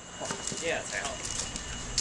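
Faint voices with a short shout of "yeah", over a low steady rumble.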